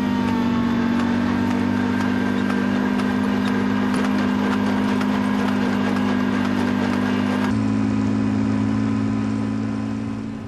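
Engine of a riding rice transplanter running steadily while it plants seedlings in a flooded paddy, with a light regular ticking over the hum. The engine note shifts slightly about three-quarters of the way through.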